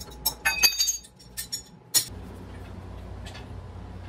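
Metal clinks and taps of a hand tool on a steel three-jaw wheel puller set on a cast-iron flywheel hub: a quick run of ringing strikes in the first two seconds, then only a low steady hum.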